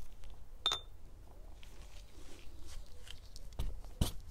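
Oil-painting brushwork: faint scratchy brush strokes, with one sharp clink about a second in and a dull thump near the end.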